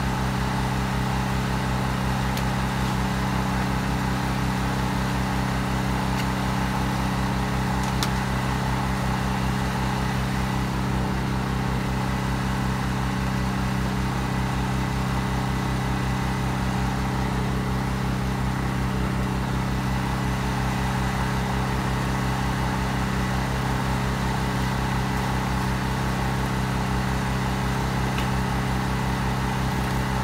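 An engine idling steadily, its even running note unchanged throughout, with one faint click about eight seconds in.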